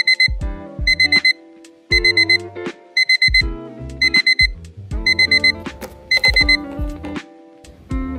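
Digital alarm beeping in groups of four quick high beeps, one group about every second, seven groups in all before it stops, over background music with plucked notes and a bass line.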